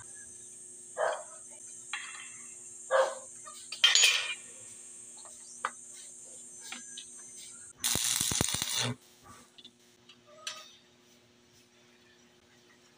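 Stick (arc) welder striking a short tack weld on the steel frame: about a second of harsh electric crackle some two-thirds of the way in, the loudest sound. Before it come a few short metal knocks and clinks, and a low steady hum runs underneath.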